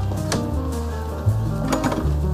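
Background music: a low bass line holding notes and changing pitch, with sharp percussive hits about a third of a second in and again near the end.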